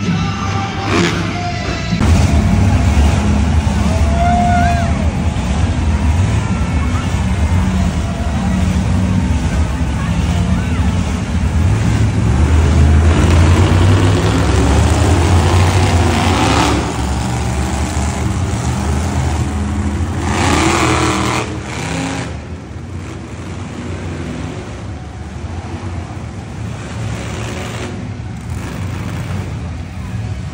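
Vehicle engines revving in an indoor arena, a deep drone with swells of revs, loudest through about the first twenty seconds and dropping off after that, with an amplified voice over it.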